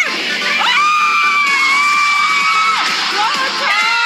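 Music playing, with a high excited cry or whoop held for about two seconds, starting just under a second in.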